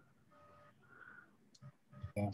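Near silence: faint room tone over a video-call line, with a faint steady tone and a tiny tick near the end.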